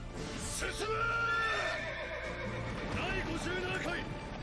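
Anime soundtrack: a horse neighing over music, then a man's voice calling out in Japanese near the end.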